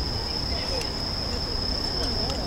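Crickets singing one continuous, steady high-pitched trill, with faint murmuring voices underneath.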